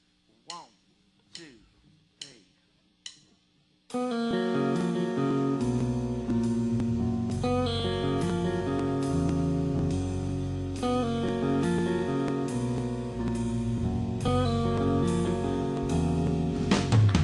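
A few short, separate guitar notes sliding down in pitch with quiet gaps between them. About four seconds in, a full, steady electric guitar part starts abruptly, with low notes coming in a second or two later, as a live rock song opens.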